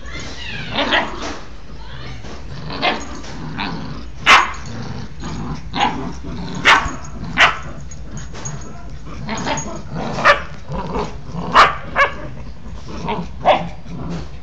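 A Maltese and a Rottweiler puppy playing over a chew toy, with repeated short yips and barks, about a dozen sharp ones spread through.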